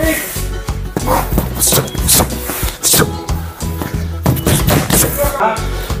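Music with a heavy bass beat, over which boxing gloves land on a heavy bag and a belly pad in sharp, irregularly spaced smacks.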